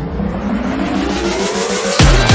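A rising sweep transition effect in a dance song mix: several tones climbing steadily in pitch over a building whoosh of noise for two seconds, cut off at the end by the next song's beat coming in loud.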